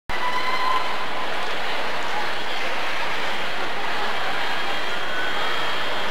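Steady murmur of a large indoor crowd waiting before a performance: an even wash of many distant voices with no single voice standing out. It starts abruptly as the recording begins.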